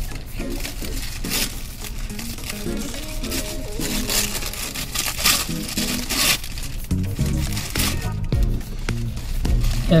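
Takeout food bag and paper wrapper crinkling in irregular rustles as food is taken out and unwrapped, over background music with low, stepping notes.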